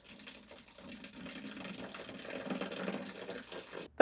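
Liquid being poured out in a steady stream, growing louder, then cutting off abruptly near the end.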